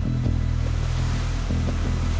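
Ocean surf breaking on the shore, a steady wash of noise, over a low sustained music bed.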